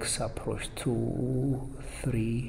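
Only speech: a man's voice talking.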